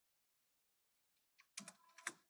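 Typing on a computer keyboard: a quick run of keystrokes starting a little over a second in.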